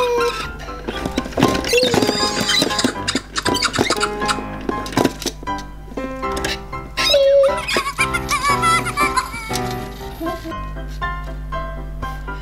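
Fingerlings electronic baby-monkey toys babbling and squeaking in short, warbling chirps while they are rocked on the see-saw, with music playing under them.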